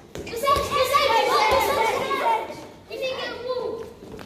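Children shouting and calling out together during a ball game, with a couple of short knocks.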